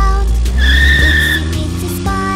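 Cartoon tyre-squeal sound effect for a toy car: a steady high screech lasting under a second, about half a second in. It plays over a children's song backing track, with a low engine-like tone rising underneath.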